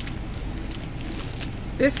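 Soft rustling of a clear plastic gift bag being handled, over a steady low background hum.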